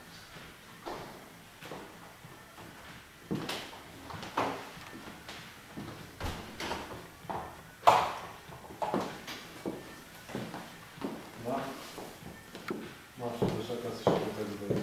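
Hairdressing scissors cutting hair in short, irregular snips, one about eight seconds in louder than the rest, with faint voices underneath.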